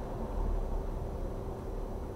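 Steady low rumble of a vehicle engine running outside, with a faint steady hum over it.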